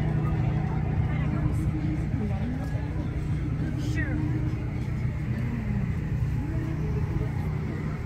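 A steady low engine hum, with faint voices in the background.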